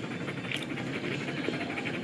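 A German Shepherd panting steadily in soft, even breaths.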